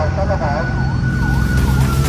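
Siren sound effect in a soundtrack intro: a rapid rising-and-falling wail, about two to three sweeps a second, over a loud, steady deep bass drone with a thin high tone held above it.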